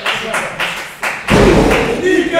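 A single heavy thud of a wrestler's body hitting the ring canvas about a second and a half in, with the ring's low boom ringing on briefly.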